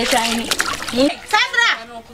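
Water splashing in a plastic basin as clothes are scrubbed by hand, under a voice repeating 'hey' in long, sliding notes.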